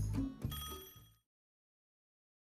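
Short musical sting closing a scene: a bright bell-like chime strikes about half a second in and rings out, fading to silence just after a second.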